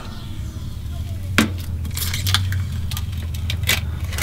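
Glass tiles clicking and clinking as they are handled and set down on a countertop: a few sharp clicks, one about a second and a half in, a cluster around two seconds, another near the end, over a steady low hum.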